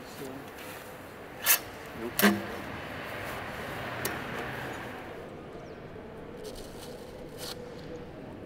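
Two sharp knocks about a second apart from hands working the net fittings on a metal goalpost, the second with a brief metallic ring, over steady background noise.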